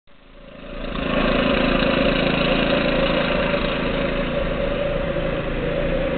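A steady mechanical drone, like a motor running, fading in over the first second and then holding level.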